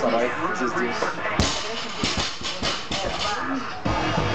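A loaded barbell is dropped and hits the floor with a sharp crash about a second and a half in. Its plates bounce with several quicker, fainter knocks, and another knock comes near the end. Music and voices play underneath.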